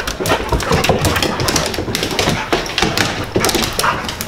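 Dogs moving about on hard stairs and a tile floor: a dense, irregular run of claw clicks, knocks and scuffling.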